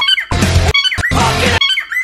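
A cockatiel's high-pitched squeaky calls, chopped in between short bursts of a heavy metal song in a choppy, stop-start edit.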